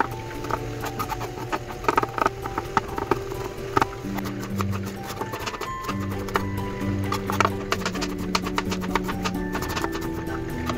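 Background music with a slow melody, over irregular sharp knocks of a serrated kitchen knife chopping on a cutting board, first through minced garlic and then through red onion.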